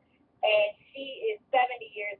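A woman's voice speaking in short, high, sing-song phrases with brief pauses between them.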